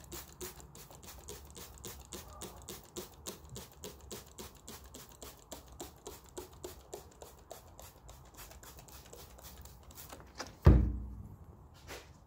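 Trigger spray bottle spritzing in quick, even squirts, about four a second. Near the end, a single loud thump.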